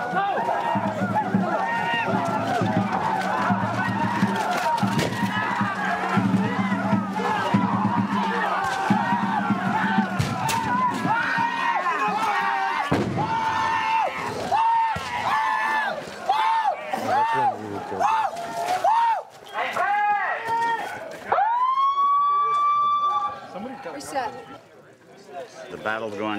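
Many voices yelling and yelping war cries, with sharp shots from muzzle-loading guns among them. Past the middle the cries turn into a fast run of whoops, about two a second, and near the end one long rising cry is held for about two seconds.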